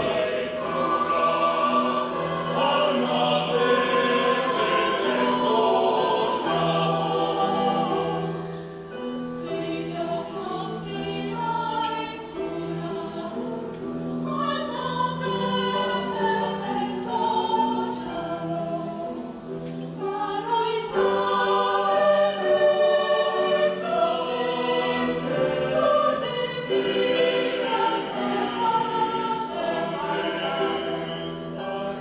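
Mixed youth choir singing an Ecuadorian folk song in several parts, men's and women's voices together. The singing thins out briefly about 9 seconds in and again about 20 seconds in, then fills out again.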